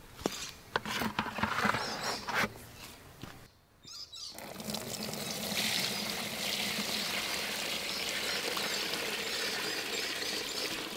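Liquid weed-tea fertiliser poured from a bucket through a plastic mesh sieve into a plastic tub: a steady splashing pour that starts about four seconds in. Before it come a few knocks and clicks of handling.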